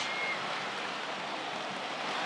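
Steady, even noise of the stadium ambience picked up by the field microphones during play. A brief faint high tone comes just after the start.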